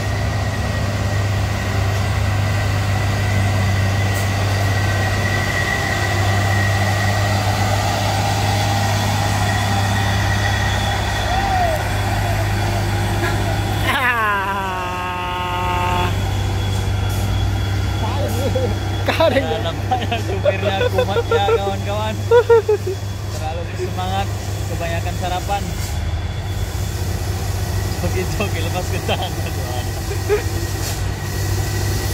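Heavy diesel truck engine pulling steadily up a steep grade, a constant low drone. About halfway through, a pitched tone sounds for about two seconds, sliding down sharply at its start. Voices follow.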